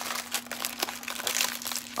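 A cardboard Girl Scout cookie box being opened by hand: the packaging rustles, with a quick string of small crackles and clicks.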